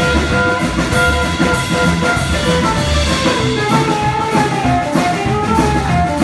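Live blues band playing: harmonica amplified through a microphone, playing long held notes that move to new pitches about halfway through, over upright bass, a drum kit with a steady cymbal beat, and hollow-body electric guitar.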